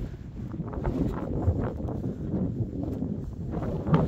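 Strong wind buffeting the microphone: a gusty, low rushing noise that rises and falls.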